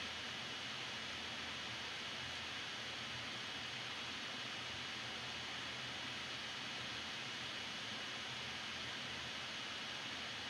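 Steady faint hiss of a recording's background noise, with a low hum underneath. Nothing else happens.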